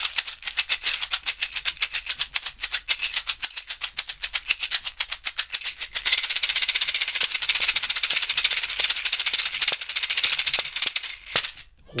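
Large dried, varnished seed pod shaken as a rattle, its loose seeds rattling inside: a quick, even rhythm of shakes, then from about halfway a faster, continuous shaking that stops just before the end.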